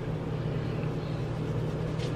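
A steady low hum with hiss over it.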